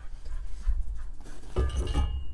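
Black metal hammock-stand poles being handled and set down, with light metal clinks over a low rumble.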